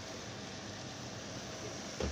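Steady sizzling of minced meat and chopped vegetables frying in oil in a pan.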